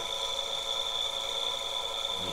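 A 360-watt permanent-magnet DC motor running steadily on a lithium-ion battery pack, with a steady high-pitched whine.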